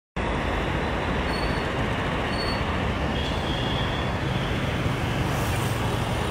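Flash-flood torrent of muddy water rushing steadily, a river swollen by a cloudburst.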